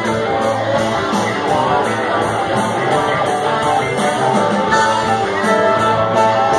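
A rock band playing live: electric guitars, bass and drums in an instrumental passage without singing, with a steady cymbal beat.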